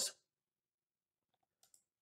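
Near silence, with a few faint computer mouse clicks about a second and a half in.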